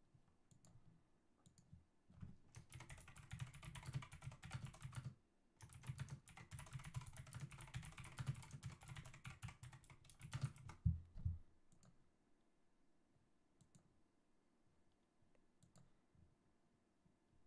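Computer keyboard typing in two quick runs of keystrokes, a short pause between them, with a louder knock near the end of the second run; only a few faint clicks otherwise.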